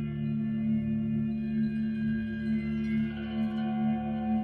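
Electric guitar through an amplifier holding a steady, ringing low drone with a slight pulse, as in ambient guitar playing; higher tones shift about three seconds in.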